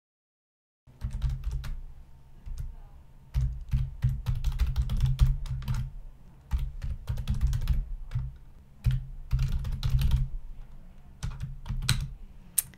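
Typing on a computer keyboard. It starts about a second in and runs in several bursts of rapid keystrokes with short pauses between them, each keypress landing with a dull thud.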